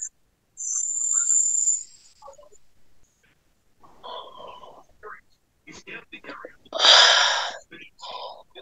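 A woman's breathy whispering and hissing breaths over a video call, with one loud, long exhale near the end.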